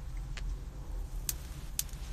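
Low steady rumble inside a car, with three or four faint short clicks.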